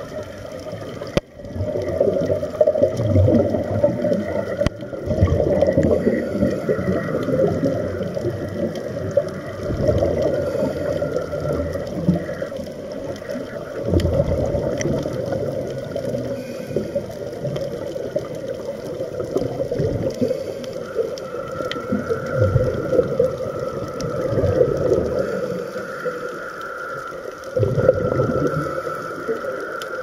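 Muffled water sound picked up by a camera held underwater: a low, uneven rushing and gurgling that swells and eases. A faint steady hum joins it about two-thirds of the way through.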